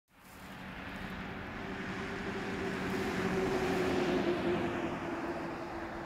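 A car driving past on the road, its tyre and engine noise swelling to a peak about four seconds in and then fading away.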